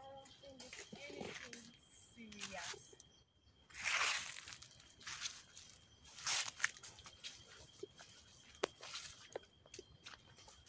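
Faint, indistinct speech in the first few seconds, then a few short rustles and crunches of footsteps through dry leaves and undergrowth.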